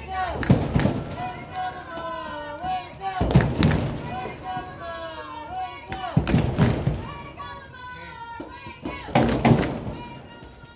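Young football players' and onlookers' voices calling and chattering, with a heavy thump about every three seconds, four in all.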